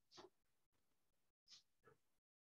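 Near silence: faint room tone, broken by two faint, brief sounds, one just after the start and one about a second and a half in.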